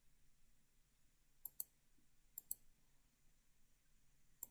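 Computer mouse clicking: two pairs of short, sharp clicks about a second apart, with near silence around them.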